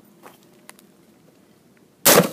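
Quiet background hiss with a few faint, short clicks.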